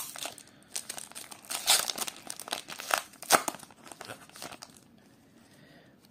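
Foil wrapper of a Pokémon trading card booster pack crinkling and tearing as it is pulled open by hand, in irregular crackles that die down about five seconds in.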